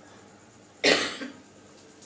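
A man coughs once, short and sharp, about a second in.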